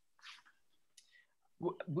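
A pause between speakers on a video call: a faint short noise and a soft click, then a man starts to speak near the end.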